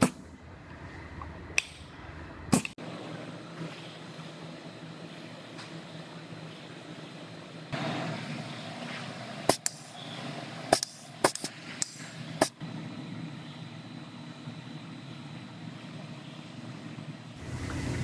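Sharp clicks from a hand-squeezed caulking gun's trigger and plunger rod as seam sealer is pushed out along body seams: a couple early, then a quick run of five or six a little past the middle. Under them is a steady body-shop background noise.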